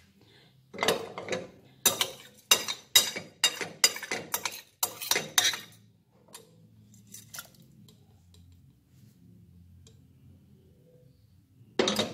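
Dry lentils tipped from a plate into a stainless steel pot, the plate clinking against the pot in a quick run of sharp clinks for about five seconds, with one more clink a little later.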